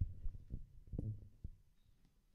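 Handheld microphone handling noise: a run of irregular low, dull thumps, about five in two seconds.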